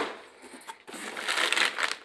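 Plastic bag crinkling and rustling, with cardboard scraping, as a bag of shrimp is pulled out of a cardboard shipping box. The rustle grows louder in the second second.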